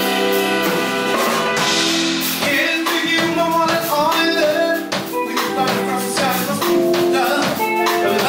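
Live funk-jazz band playing a groove, with congas, keyboards and horns, and a voice singing over it.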